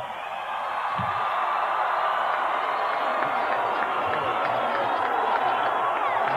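A huge crowd cheering, building over the first second and then holding steady.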